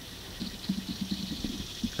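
Quiet outdoor background: a faint low rumble with a few soft, brief low sounds.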